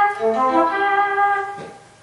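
Electric guitar with a synthesized tone playing a short legato arpeggio of sustained notes, one after another, that fades out near the end. The arpeggio illustrates the Aeolian function in a lesson on linking arpeggios to the modes.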